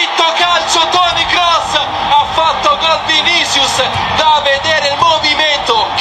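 Excited male Italian football TV commentator talking fast and loudly right after a goal.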